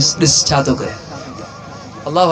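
A man preaching loudly into a microphone over a PA system, his phrase ending about a second in, followed by a quieter stretch with a faint wavering tone.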